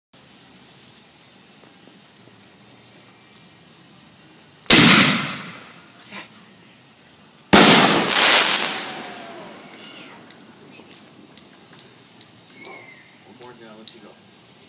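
Big Reaper 60-gram canister firework shell fired from a mortar tube: a loud bang as the lift charge launches it, then about three seconds later an equally loud bang as the shell bursts overhead. Each report echoes and fades over a second or two.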